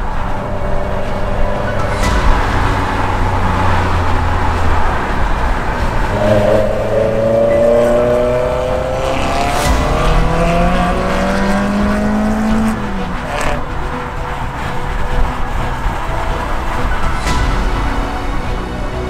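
Car engine accelerating hard, its pitch rising steadily from about six seconds in before dropping off near the thirteen-second mark.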